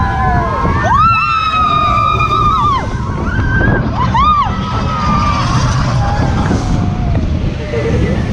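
Riders screaming on the Seven Dwarfs Mine Train roller coaster, over the steady rumble of the train and rushing wind. One long held scream starts about a second in, and a shorter one comes around four seconds in.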